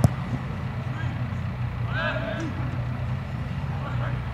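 A soccer ball kicked hard by the goalkeeper: one sharp thud right at the start. Shouts from players follow about two seconds in, over a steady low hum.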